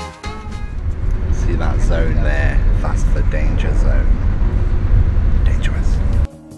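Loud, steady low rumble inside a Greyhound coach's cabin, with people's voices talking indistinctly over it.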